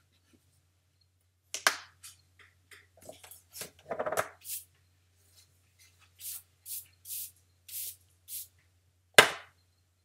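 Drawing pencils being handled on a drawing desk: scattered clicks and taps, then five short scratchy strokes about half a second apart, and one sharp knock a little after nine seconds in.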